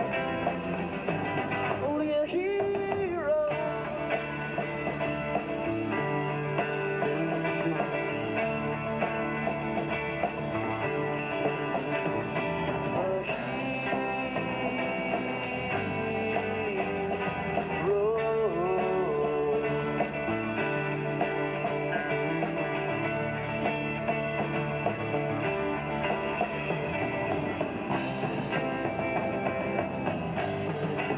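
Live rock band playing a song: electric guitars, bass guitar and drum kit.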